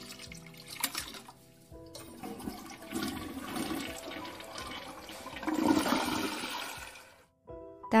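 A toilet flushing: a sharp click about a second in, then a rush of water that builds, is loudest about six seconds in and stops abruptly about a second before the end.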